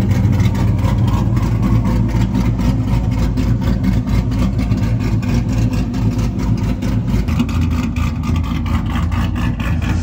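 Pontiac G8 engine idling steadily with a choppy idle, its low note shifting slightly about seven seconds in.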